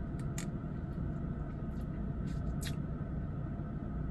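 Steady low hum inside a car's cabin, with a few faint clicks as iced coffee is sipped through a straw.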